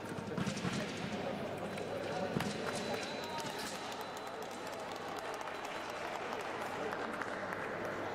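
Fencing hall ambience: a steady murmur of voices with scattered footsteps and sharp clicks, with louder knocks about half a second and two and a half seconds in.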